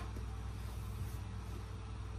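A steady low hum with a faint hiss above it.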